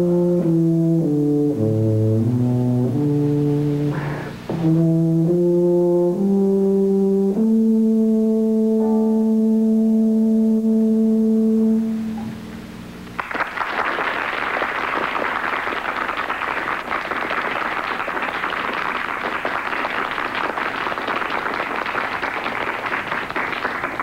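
F tuba playing the closing phrase of a piece with piano, ending on a long held low note about halfway through. Then an audience applauds steadily for about ten seconds.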